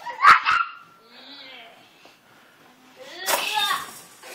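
Small children squealing and yelling at rough play, with two sharp knocks close together just after the start and a loud shriek about three and a half seconds in.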